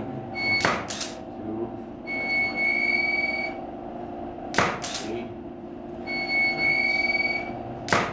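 A 35 mm camera shutter firing three times, about four seconds apart, each shot a quick double click. Between shots comes a steady high whine that rises slightly, the sound of an electronic photo flash recharging.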